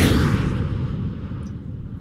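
Transition sound effect for an on-screen graphic wipe: a deep boom at the start that slowly dies away over about two seconds.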